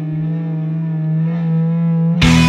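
A single distorted electric guitar chord or note held and ringing on its own, slowly swelling in loudness, with the drums dropped out in a break of a rock song.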